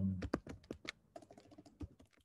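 Typing on a computer keyboard: a quick, uneven run of a dozen or so key clicks as a word is typed.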